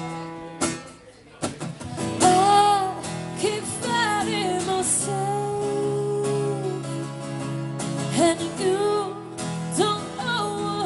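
Live acoustic-electric guitar strummed in a slow ballad. A woman's voice comes in about two seconds in, singing long held, gliding notes over the chords.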